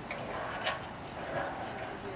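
Faint, indistinct voices with one sharp click about a third of the way in.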